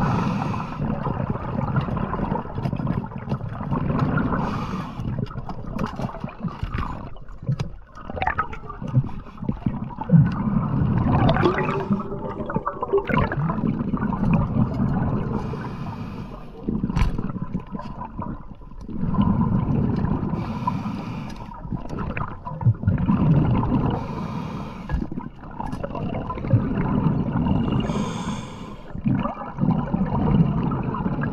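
Muffled underwater water noise on a diver's camera, surging and fading every couple of seconds, with scattered sharp clicks and knocks.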